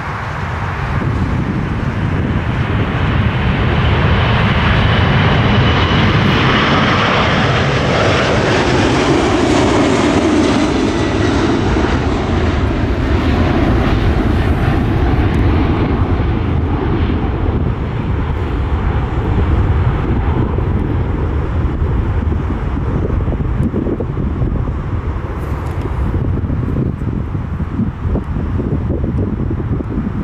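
Four jet engines of a Boeing 747 at takeoff thrust, loud and swelling as the jet lifts off and passes, the pitch falling as it goes by. Then a steadier, duller rumble as it climbs away.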